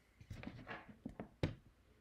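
Faint handling noises from hands moving and gear being touched: a few soft knocks and rustles, the sharpest about one and a half seconds in.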